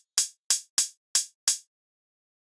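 Electronic hi-hat sample in a drum sequencer, auditioned on its own five times: short crisp ticks about a third of a second apart, stopping about a second and a half in.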